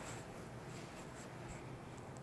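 Whiteboard being wiped clean with an eraser: a faint series of short, irregular squeaky rubbing strokes across the board.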